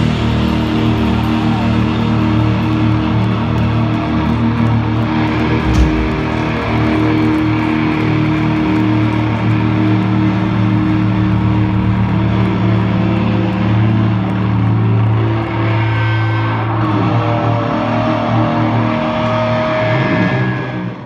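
Loud live sludge-doom band: electric guitar and bass holding long, droning notes with few drum strikes. The held notes shift about fifteen seconds in.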